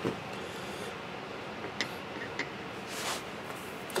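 Steady low shop room hiss with two faint, light clicks about two seconds in: small steel blocks being handled over a granite surface plate.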